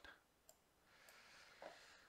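Near silence: room tone with two faint clicks, about half a second and a second in, from a computer mouse.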